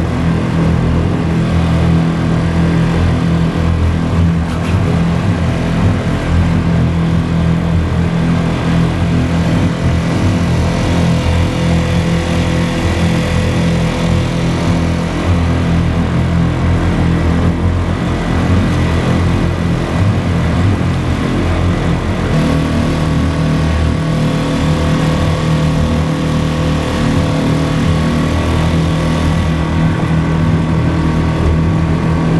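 Small outboard motor running steadily, driving a kayak along. Its tone shifts slightly about two-thirds of the way through.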